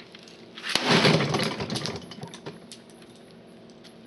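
A single loud crash about a second in, clattering for about a second and then fading into a few small ticks: hard equipment being smashed or thrown down.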